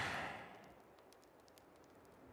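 A character's breathy sigh, starting at once and fading over about half a second.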